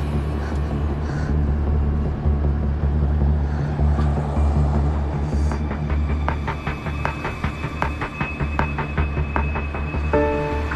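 Tense background music: a steady low drone, joined about six seconds in by a quick, evenly spaced ticking pulse.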